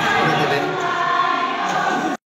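A group of voices singing together in held notes.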